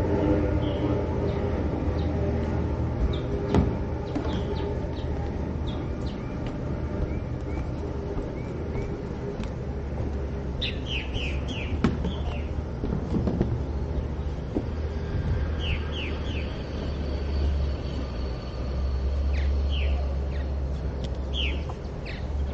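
Birds chirping in quick runs of three or four short high notes, several times through the second half, over a steady low rumble and a few light knocks.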